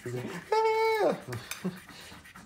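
A coin scraping the silver coating off scratch-off lottery tickets, with light taps and scrapes. About half a second in, a person's voice holds a high note for about half a second, falling away at the end; it is the loudest sound.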